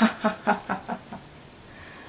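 A woman laughing: a quick run of short 'ha' pulses that fade away about a second in.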